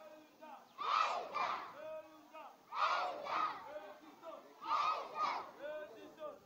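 A group of schoolchildren chanting in unison, a two-syllable shout repeated about every two seconds, three times.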